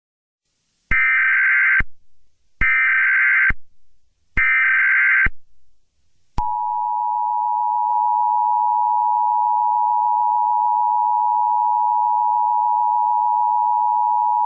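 Emergency Alert System tones: three short bursts of SAME digital header data, each just under a second long and about a second apart. About six seconds in, the steady two-tone EAS attention signal starts and holds, announcing a tornado warning.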